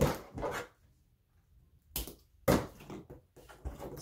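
Short rustling, scraping handling noises as a roll of glue dots and small cardstock pieces are worked by hand on a cutting mat: one at the start, then a cluster of several more from about two seconds in.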